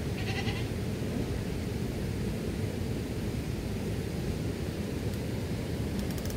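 A steady, low rushing noise at an even level, with a brief higher-pitched call in the first half-second.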